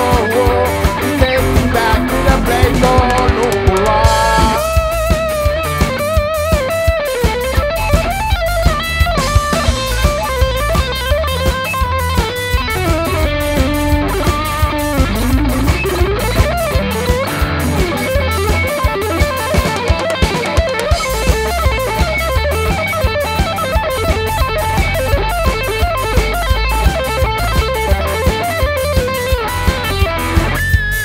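Live reggae band playing an instrumental passage with no singing: electric guitar over bass guitar and drum kit at a steady beat, with a wavering lead line through the first half.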